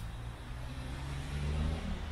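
Low hum of a motor vehicle's engine, louder in the second half.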